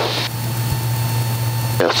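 Steady low drone of a Mooney M20K's six-cylinder turbocharged piston engine and propeller, heard inside the cockpit during the approach with the gear down.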